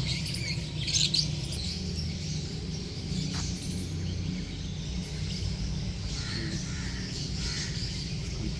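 Birds chirping and calling in scattered short notes, a little louder about a second in, over a steady low rumble.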